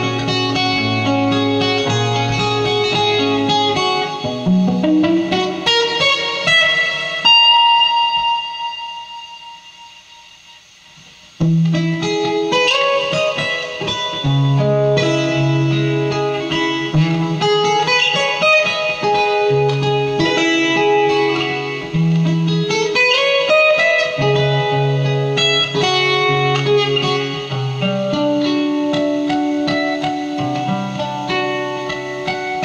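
Solo acoustic guitar playing a plucked instrumental, with bass notes under a melody. About seven seconds in, a high chord rings out and fades for a few seconds, then the playing comes back in sharply.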